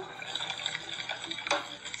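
Metal spoon stirring a thick, watery mash of boiled french fries in a stainless steel saucepan, with one sharp clink of spoon against the pot about one and a half seconds in.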